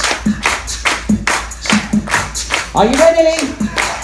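A group of people clapping in a steady rhythm, about three claps a second, along with music, with a voice singing or calling briefly about three seconds in.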